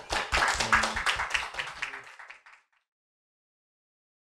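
Audience applauding, the clapping fading out after about two and a half seconds.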